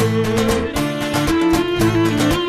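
Cretan lyra bowing a sliding melody over an even strummed accompaniment of laouto and acoustic guitar, about four strokes a second: an instrumental passage between sung verses of a Cretan song.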